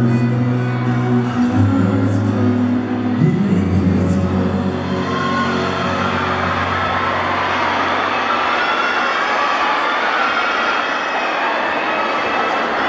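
Live band holding its final low chords, which step down twice and die away about two-thirds of the way through, while the audience cheers and screams, the cheering taking over as the music ends.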